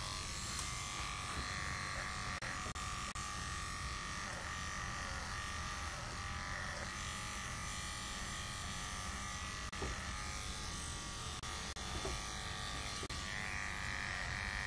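Wahl electric dog clippers with a #30 blade running steadily as they shave a poodle's face and muzzle close, against the grain. A few faint clicks sound over the hum.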